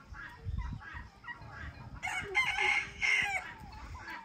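A rooster crowing. The crow starts about halfway through and lasts about a second and a half, with fainter bird calls before it.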